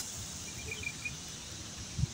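Quiet outdoor ambience with a faint low rumble. A quick run of four faint, short, high chirps comes about half a second in.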